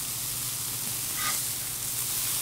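Beef burger patties sizzling steadily in bacon grease on a hot flat-top griddle.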